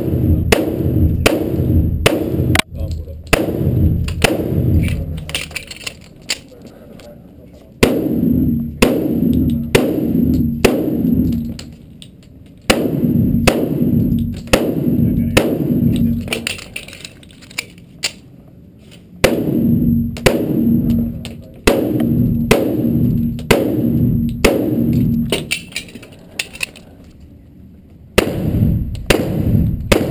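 Pistol shots from an STI Spartan 1911, fired in fast strings of about two shots a second with pauses of a few seconds between strings. Each shot echoes in a reverberant indoor range.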